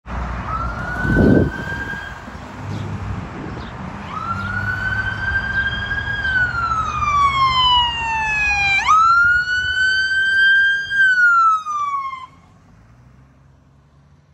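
Ambulance electronic siren on wail, sweeping up and slowly down in long cycles, jumping sharply back up in pitch about nine seconds in, then cut off about twelve seconds in; it marks an emergency response. A brief loud low rush about a second in, with a low traffic rumble under the siren.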